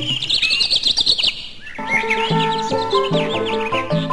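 Bird chirping in a rapid series of short high notes. Instrumental music stops for the first couple of seconds and comes back about two seconds in.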